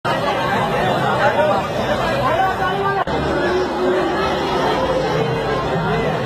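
Crowd of guests talking and calling out over one another, a busy chatter of many voices. The sound drops out for an instant about halfway through.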